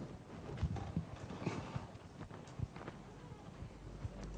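Faint room tone with scattered, irregular small clicks and taps, a dozen or so over a few seconds, none of them loud.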